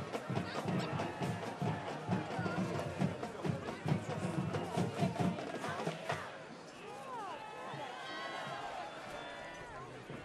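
Marching band drums playing a steady beat in the stands, stopping about six seconds in, after which crowd voices and shouts carry on.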